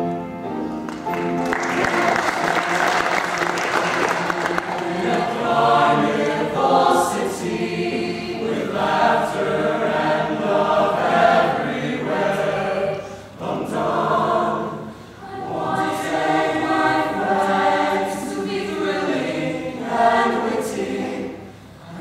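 A show choir singing a sustained passage in multi-part harmony, the chords swelling and easing and briefly dipping in level a few times. A burst of crowd noise, like audience cheering, overlaps the singing about two seconds in.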